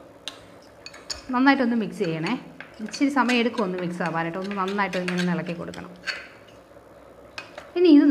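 Metal spoon stirring a paste in a ceramic bowl, clinking and scraping against its sides. A person's voice runs over it from about a second and a half in until about six seconds in.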